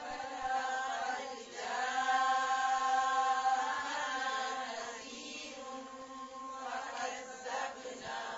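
Melodic vocal chanting in long held notes over a faint steady drone.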